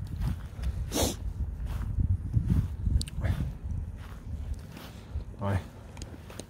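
Footsteps along a tarmac path with a steady low rumble from a hand-held camera being carried, and a short sharp noise about a second in.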